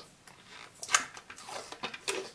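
Sticker label being peeled off a small plastic bottle by hand: a few short crackles and clicks, the sharpest about a second in.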